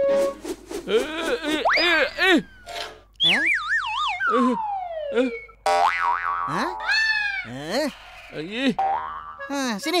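Cartoon sound effects for a thrown grappling-hook rope: a run of wobbling, springy pitched tones and a whistle that slides steadily down in pitch from about three to five and a half seconds in, as the hook falls back.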